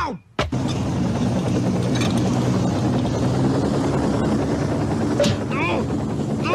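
Helicopter rotor running steadily. It starts suddenly about half a second in, and a short voice-like cry comes near the end.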